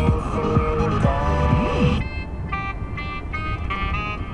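Music from a car radio playing in the cabin: an electronic dance track with a beat, which gives way about halfway through to sustained organ-like keyboard chords.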